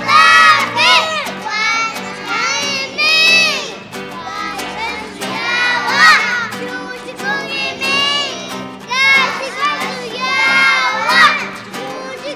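A choir of very young children singing a Christmas song in Kichwa, loud and close to shouting, in phrases that rise and fall, with acoustic guitar underneath.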